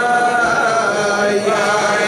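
Men singing a Chasidic niggun, with long held notes that step from pitch to pitch.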